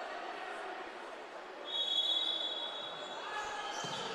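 Indoor futsal arena ambience: crowd murmur from the stands with ball and play sounds on the court. About two seconds in, a high steady whistle sounds for just over a second.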